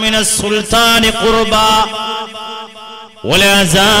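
A man's voice chanting in a melodic, drawn-out recitation style, holding and bending long notes, as in sung Arabic recitation during an Islamic sermon. It softens in the middle and swells again near the end.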